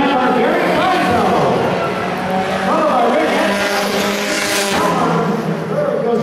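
Roadrunner-class race car engines running hard past the fence, their pitch climbing and levelling off as the cars accelerate, with the loudest, noisiest pass about four and a half seconds in.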